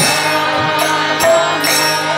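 Kirtan music: a devotional mantra chanted over sustained instrument tones, with sharp percussion strikes recurring through it.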